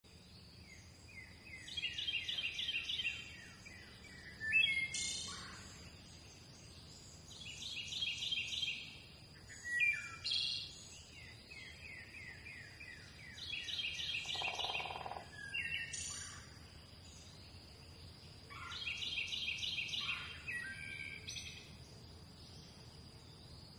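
A songbird singing the same phrase four times, about every six seconds: a quick run of falling notes followed by a fast high trill. A faint steady high-pitched tone runs underneath.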